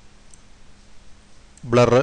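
A faint single computer mouse click about a third of a second in, over a low steady hum. Near the end, narration begins.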